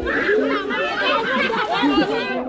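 Many children's voices chattering and shouting over one another, with water splashing as they wade through the pool.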